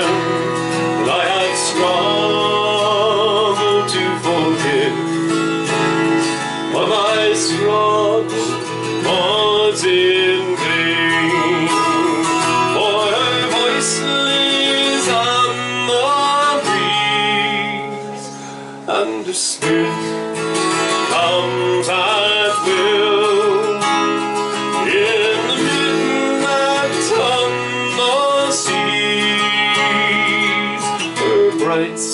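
A man singing a slow traditional ballad, accompanied by a strummed twelve-string acoustic guitar, with a brief lull about two-thirds of the way through.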